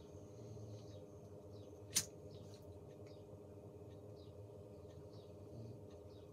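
A tobacco pipe being puffed: faint small pops and sucks over a steady low hum, with one sharp click about two seconds in.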